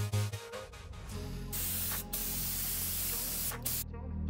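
Gravity-feed compressed-air spray gun spraying polyurethane top coat mixed with anti-slip beads: a steady hiss that starts about a second and a half in, drops out briefly twice as the trigger is let off, and cuts off just before the end.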